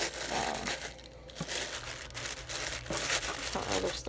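Tissue paper crinkling and rustling as hands press and tuck it into a small cardboard mailer box, in uneven bursts with a brief lull about a second in.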